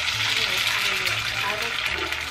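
Running water, a steady rushing hiss.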